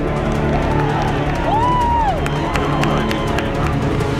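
Background music mixed with live field sound from a football game: shouted voices and crowd noise.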